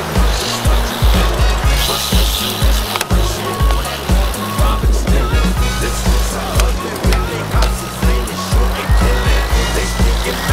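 BMX bike tyres rolling over smooth concrete, under a hip-hop backing track with a steady bass beat. A single sharp knock comes about three seconds in.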